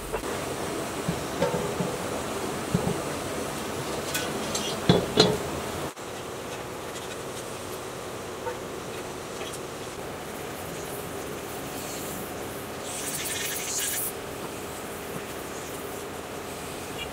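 Light metallic clicks and knocks of a socket wrench on a motorcycle battery's terminal bolt, loudest about five seconds in. After a sudden cut, a steady background of buzzing insects, with a brief rustle near the end.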